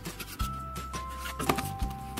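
Background music: held notes that change every half second or so over a stepping bass line. A few soft clicks of cardboard rolls being handled come through about half a second and a second and a half in.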